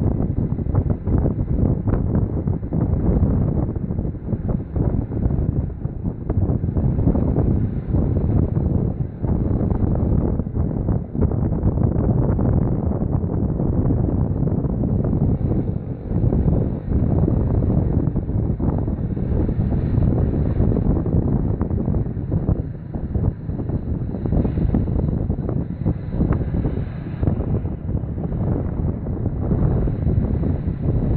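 Wind buffeting the microphone of a camera moving along with the traffic: a loud, steady low rumble that flutters throughout.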